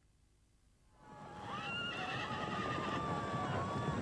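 About a second of silence, then horses neighing over a rising din of hooves and movement, the neighs drawn out and overlapping.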